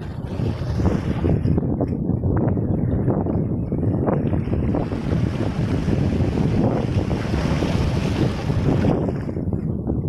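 Small waves washing in over rocks and pebbles, the foam hissing as each surge runs up, with wind buffeting the microphone as a steady low rumble underneath.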